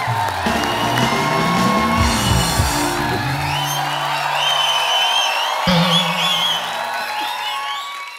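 Show music with a bass line plays while a studio audience cheers and whoops over it; the music fades out near the end.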